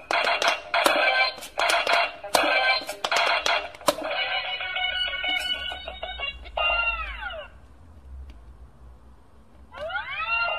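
Electronic quick-push pop-it game bleeping as its buttons are pressed: rapid electronic tones with sharp button clicks for about four seconds, then a run of steady tones and a falling tone about seven seconds in, followed by a lull.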